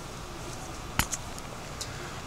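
A handcuff key fumbling at a pair of handcuffs while searching for the keyhole: one sharp metal click about a second in, followed closely by a smaller click and a faint tick near the end.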